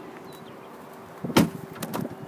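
BMW X6 car door clunking once about one and a half seconds in, followed by a lighter click near the end.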